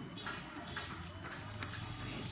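Handling of a weighted cast net as it is gathered and swung out for a throw: a few faint clicks and rustles.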